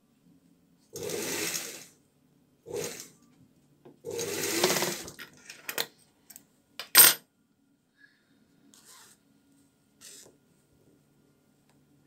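Industrial sewing machine stitching in a zipper in short runs: two bursts of about a second each with a brief one between, over a faint steady motor hum. A few clicks and one sharp snap follow in the second half as the fabric is handled at the machine.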